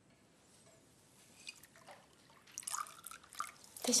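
Faint, short clinks and taps of glasses and tableware at a dinner table, just after a toast. They come mostly in the second half.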